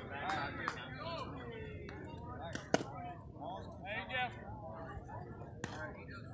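Indistinct voices of people talking and calling out across a ballfield, with a sharp smack a little under three seconds in and a weaker one near the end.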